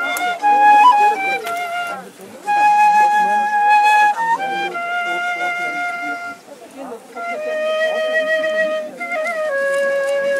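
Solo small flute playing a slow melody of long held notes, each joined by short quick ornamental runs, with brief breaths between phrases.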